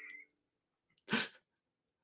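A single short, sharp burst of a person's breath and voice about a second in, preceded by a faint tonal sound that fades out at the very start.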